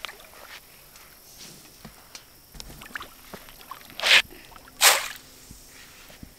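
Fish feed pellets thrown onto a pond, landing as two short pattering showers on the water about four and five seconds in, with small scattered plops and ticks before them. A satisfying sound.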